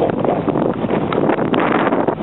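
Wind buffeting the microphone: a steady rushing noise.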